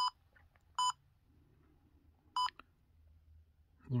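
Trail camera's button beeps: three short, identical electronic beeps as its menu keys are pressed, one at the start, one a little under a second in and one about two and a half seconds in.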